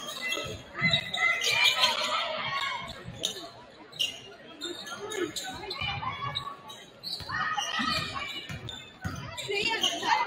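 A basketball bouncing on a hardwood gym floor during live play, with people's voices calling out, all heard in the echo of a large gym.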